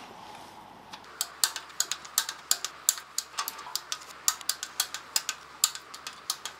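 Hand ratchet wrench clicking in quick runs, about five clicks a second, as the bolts of an engine oil pan are run in. The clicking starts about a second in.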